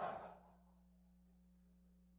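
Near silence with a faint steady hum, after a man's voice trails off in the first moment.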